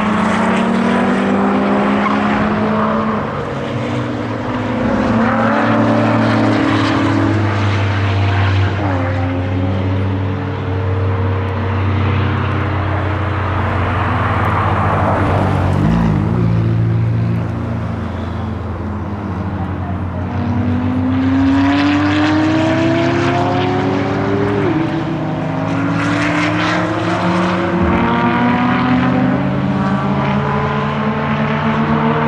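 Several sports car engines at high revs on a race circuit, overlapping. Their pitch climbs as they accelerate and drops back sharply at each upshift.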